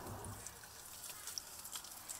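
Faint, steady background hiss with a few soft ticks scattered through it.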